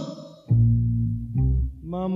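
1960s rock band recording, instrumental intro: a held, bending note dies away, then an electric bass plays two low plucked notes, the first about half a second in and the second just before the end.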